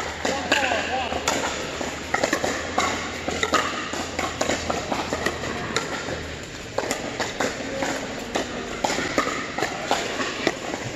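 Pickleball paddles hitting plastic balls: many sharp, hollow pops from several courts, ringing in a large indoor hall, over players' voices.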